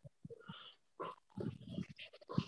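Faint, short murmured voice sounds over a video call, a few soft bits of speech too quiet to make out.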